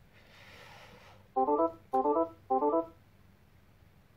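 DeltaV Operate alarm tone from the operator station's computer speakers: a short organ-like electronic tone sounds three times about half a second apart, after a faint hiss in the first second. It is the audible alert for the active, unacknowledged low and low-low process alarms.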